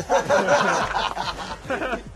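Men laughing and chuckling together, loudest in the first second.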